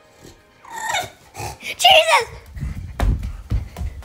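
A bulldog vocalizing in a long, whining, talking-like call that bends up and down in pitch and slides down at the end. It is followed by a run of low bumps and rustles as the recording phone is moved.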